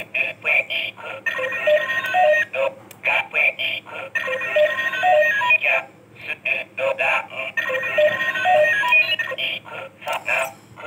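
Kamen Rider Kiva DX Ixa Driver toy playing an electronic standby sound through its small speaker. A short phrase of pulsing beeps and stepping tones repeats about every three seconds, thin and tinny.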